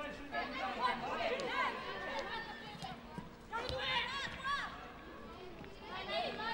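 Voices of players and coaches calling out on a soccer pitch during play, in short bursts over open-air background noise.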